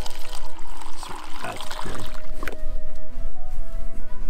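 Apple cider being poured, a liquid trickle over background music.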